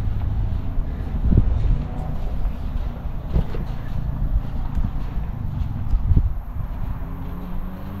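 Wind buffeting the microphone as a steady low rumble, with a few short knocks of footsteps on a concrete slab. A faint low hum rises in pitch near the end.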